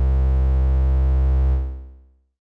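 Bassy synthesizer note filtered by a Doepfer A-106-6 XP filter in 2-pole notch plus 1-pole low-pass mode, held steady at its sustain level with a static notch cutting a band of its harmonics. It fades out over about half a second near the end as the key is released.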